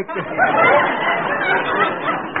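Studio audience laughing, a loud, dense swell of many voices at once.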